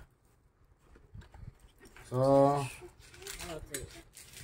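Mostly a quiet room: one drawn-out spoken "So" about halfway through, followed by a few faint light taps near the end.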